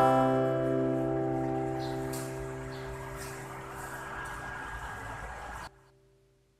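Closing chord on an electric guitar, strummed just before, ringing on and slowly dying away; the sound cuts off suddenly near the end.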